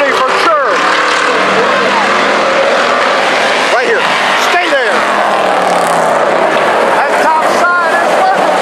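A pack of IMCA Hobby Stock race cars running hard around a dirt oval. Their engine notes drop in pitch as cars go by, once about half a second in and again around four to five seconds in.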